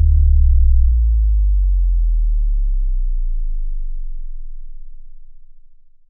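Deep electronic sub-bass boom from an outro sound effect: low tones that slowly fall in pitch while fading out over about five seconds.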